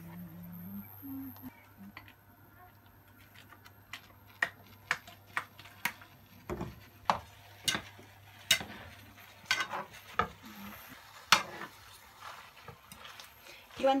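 Spaghetti being tossed in a frying pan with a metal fork: a string of sharp, irregular clinks and scrapes of the fork against the pan, over a low steady hum.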